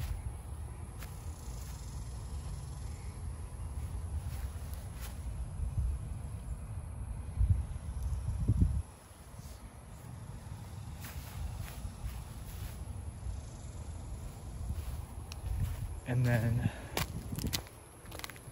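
Low, uneven rumble on a hand-held phone's microphone outdoors, stopping abruptly about nine seconds in, then a quieter background with a few faint clicks.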